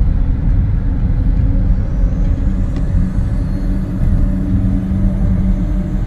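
A car driving at speed, heard from inside the cabin: a steady low road rumble with a constant hum underneath.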